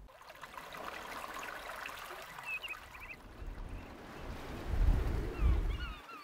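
Gentle wash of shallow sea water on a sandy beach, with short bird calls twice, about halfway through and near the end. A deeper low rumble swells about five seconds in.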